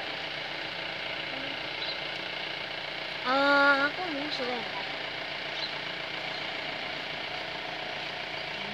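A steady background drone, broken a little over three seconds in by a short, loud vocal call held on one pitch, then a brief wavering vocal sound.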